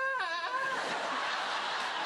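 A goat giving one wavering bleat that sounds a little bit broken, lasting under a second. It is followed by a steady wash of studio audience laughter.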